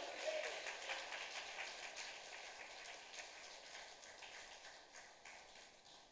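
Faint crackling hiss that fades away over about four seconds, leaving near silence.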